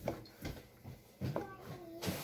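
Chef's knife slicing through hot dogs and knocking on a plastic cutting board, three strokes about half a second apart.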